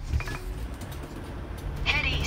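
Car road noise heard from inside the moving cabin, a steady low rumble, with a short high wavering cry near the end.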